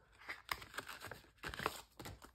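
Crinkling and light clicking of a clear plastic cover being handled and pulled away from a sheet of adhesive-backed rhinestone gems, in short irregular rustles.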